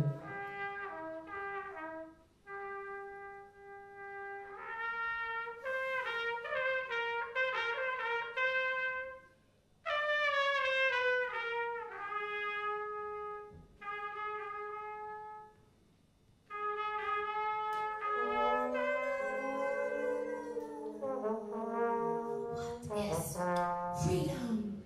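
Big band horn section, led by trumpets and trombones, playing a freely improvised passage of held notes and short phrases, broken by brief pauses. A long note slides down about ten seconds in, and several horns pile up in overlapping lines near the end.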